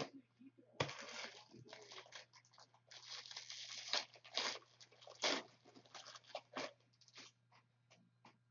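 Foil trading-card pack wrapper being torn open and crinkled in the hands: an irregular run of sharp crackles and rips, starting about a second in.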